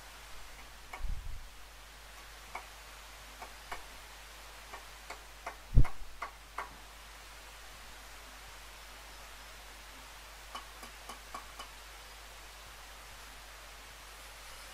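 A mason's trowel tapping and scraping against brick and mortar along the top of a thin brick wall, in scattered light clicks, with one louder thump about six seconds in.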